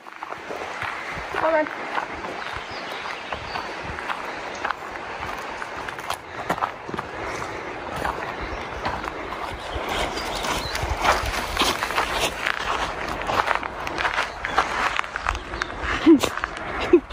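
Footsteps crunching on a dirt trail while hiking, with indistinct voices.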